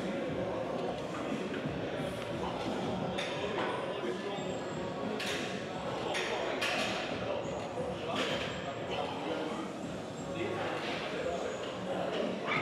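Metal weight plates on a plate-loaded press machine clinking several times as the arms move through repetitions, over a steady din of indistinct voices in a large gym room.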